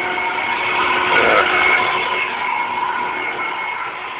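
A floor-cleaning machine's motor running steadily with a high whine, swelling briefly about a second in.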